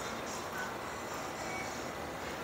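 Faint, steady outdoor background noise, a low hum such as distant traffic, with a few brief faint high tones.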